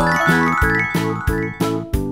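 Upbeat background music with a steady beat of about three strokes a second. A run of tinkling chimes climbs and then fades out during the first second and a half.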